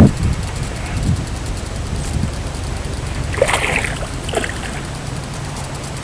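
Steady outdoor wind and water noise at the shore: a low rumble with hiss, plus a couple of brief faint sounds in the middle.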